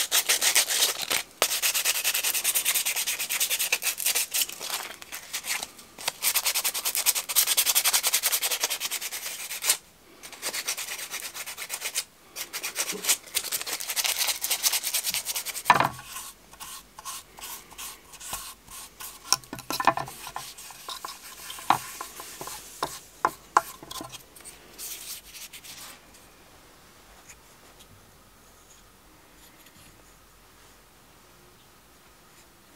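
Rapid rubbing and scraping strokes of hand-smoothing a small carved wooden spoon, dense at first, with short breaks around ten and twelve seconds in. After about sixteen seconds the strokes come sparser, with sharp clicks, and they fade out a few seconds before the end.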